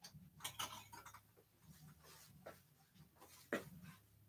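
Near-quiet room with a few faint, scattered clicks and taps, the sharpest about three and a half seconds in, over a faint steady low hum.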